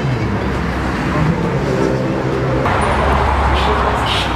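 Busy street ambience: passers-by talking as they walk past, over traffic noise, with a low vehicle rumble growing louder about three seconds in.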